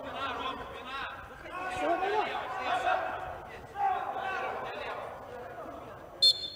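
Men's voices shouting and calling out on the pitch, echoing in a large indoor hall.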